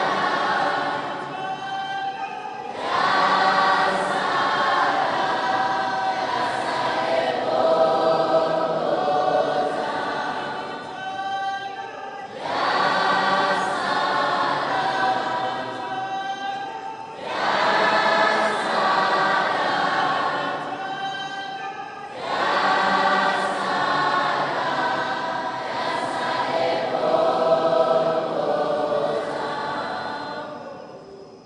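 A choir of many voices singing in long phrases, with brief pauses between them, and fading out at the end.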